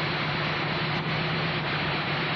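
Dune buggy's 1500-series engine running steadily at an even speed.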